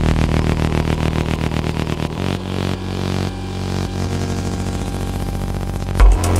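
Melodic techno in a breakdown without the kick drum: a fast, evenly pulsing synth pattern over sustained bass, the deepest bass thinning out about two seconds in.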